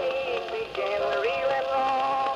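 A late-1920s Edison Blue Amberol cylinder record of an old-time country song playing on an Edison cylinder phonograph. It has the narrow, thin sound of an acoustic recording: a melody of gliding, changing notes with no deep bass and no bright top.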